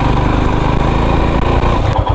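Royal Enfield Himalayan's single-cylinder engine running steadily under the rider at low road speed.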